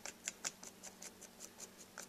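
A wooden stick scraping and tapping across a copper circuit board in a plastic tub of etching solution: a quick run of faint ticks, about six a second. The board is being agitated to lift off the dark coating that the etch leaves on the copper.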